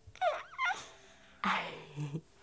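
A baby's two short, high-pitched squeals with sliding pitch, followed about halfway through by a breathy exhale that runs into a low hum.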